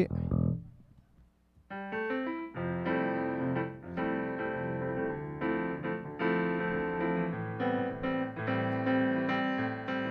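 Stage keyboard with a piano sound playing a run of sustained chords for its sound check, starting about two seconds in.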